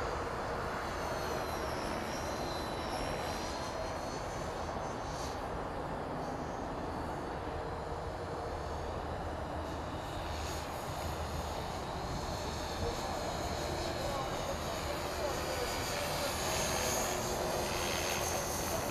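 450-size electric RC helicopter flying overhead: a high motor and rotor whine that glides up and down in pitch as it manoeuvres, growing louder near the end as it comes closer.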